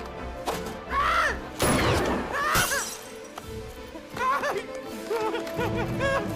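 Animated-film soundtrack music with a loud crash of shattering glass between about one and a half and two and a half seconds in.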